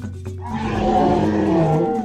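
Animated Parasaurolophus dinosaur call, a single long sound-effect call with a wavering, slightly falling pitch. It starts about half a second in and cuts off at the end, over background marimba music.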